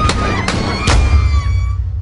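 Dramatised gunshots: three sharp shots about half a second apart in the first second, over a low rumble, with their ringing dying away near the end.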